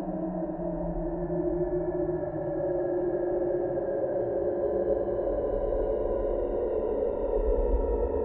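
Eerie ambient background music: a sustained low drone with several held tones drifting slowly in pitch.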